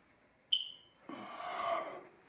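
A single high chirp from a smoke detector about half a second in, fading away within half a second, followed by a rougher, lower noise lasting nearly a second.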